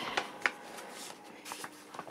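Small plastic toy packaging being handled in the fingers: a few light clicks and rustles, with one sharper click about half a second in and two close together near the end.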